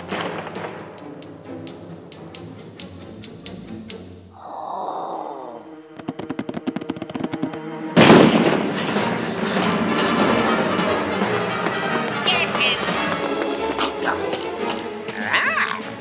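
Soundtrack of a storyboard reel: music with sound effects, quieter at first, with a quick run of clicks about six seconds in, then a sudden loud hit about eight seconds in after which busy, loud music and effects carry on.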